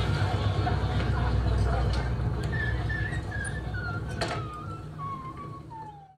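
Low, steady rumble of an old boat's engine running, with voices over it, fading away toward the end.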